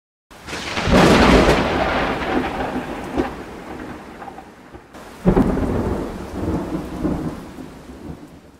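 Intro sound effect of two long, deep rumbling booms: the first comes in about a third of a second in and dies away over some four seconds, the second hits suddenly just after five seconds in and fades out by the end.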